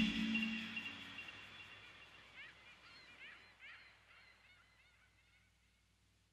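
An ambient synth track fading out over the first second or so, leaving a field recording of a few faint, high bird chirps in short clusters.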